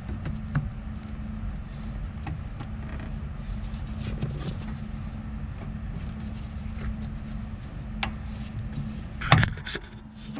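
Small clicks and taps of a bushing and the upper clutch rod being worked onto a clutch pedal by hand, over a steady low hum. A louder clack near the end.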